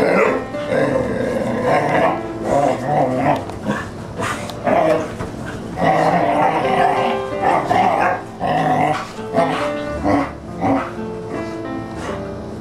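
Dogs play-growling in irregular rough bursts while wrestling, over background music.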